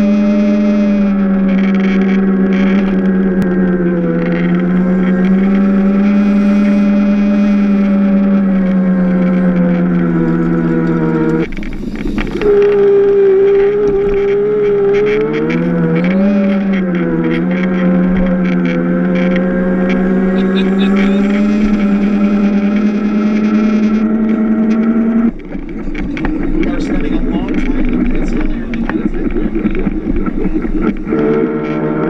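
Electric drive motor of a Power Racing Series kart, heard on board, whining steadily under power with its pitch shifting slightly with speed. It cuts out briefly about eleven seconds in, and falls away to a rougher, lower whine at about twenty-five seconds.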